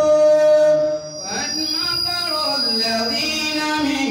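A man reciting the Qur'an in a melodic chant over a microphone, holding a long note, pausing briefly for breath about a second in, then going on in sliding, drawn-out phrases.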